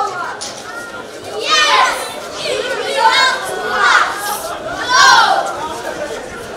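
Children's voices shouting out, in four or five high-pitched calls about a second apart.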